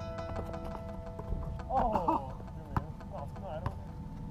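A basketball knocking on an outdoor court in a few sharp thuds, the strongest a little under three seconds in, with a short shout about two seconds in, over faint background music.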